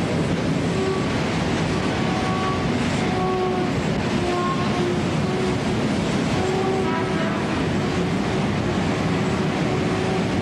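Steady, loud industrial noise of smelter furnaces and machinery, with short pitched tones coming and going over it.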